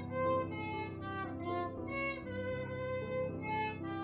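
Violin played by a young student, a slow melody of held notes, over a piano accompaniment. The tune sounds like an old Japanese song.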